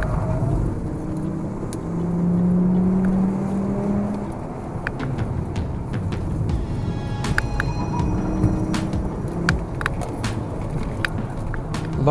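In-cabin sound of a Volkswagen Golf Mk6's 2.5-litre five-cylinder engine pulling the car along a winding road, a steady drone that is loudest and most even about two to four seconds in, with scattered sharp clicks and knocks.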